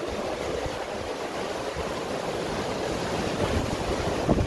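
Sea waves washing over shoreline rocks in a steady rush, with wind buffeting the microphone.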